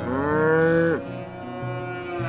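A Holstein dairy cow's moo: one call about a second long that rises in pitch at the start, then holds steady, over background music. It is the calling between a mother cow and her calf that have just been reunited.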